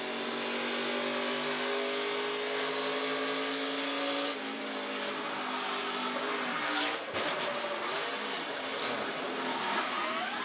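In-car sound of a NASCAR Xfinity Series Toyota Supra's V8 engine running at speed, heard through the in-car camera microphone. It is a steady drone that sags slowly over the first few seconds, breaks off briefly about seven seconds in, then wavers unevenly.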